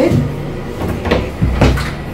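A louvered wooden interior door being handled: a click at the start, then knocks about a second in and a low thump near the end.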